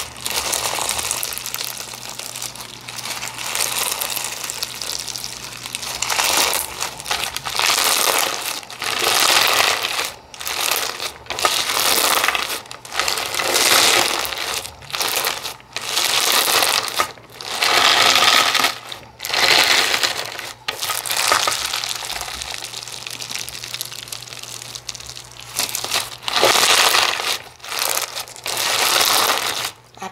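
Crunchy clear-base lava rock slime being squeezed, folded and pressed by hand, crackling and crunching in repeated swells about once a second.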